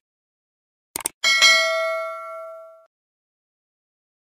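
A subscribe-button sound effect: two quick mouse clicks about a second in, then a bell ding that rings out and fades over about a second and a half.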